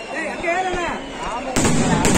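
Aerial sky-shot fireworks bursting overhead: a sudden loud blast about one and a half seconds in, followed by continuous crackling with sharp reports.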